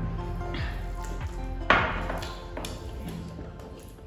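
Soft background music with a sharp clink a little under two seconds in, as a drinking glass is set down on a glass tabletop.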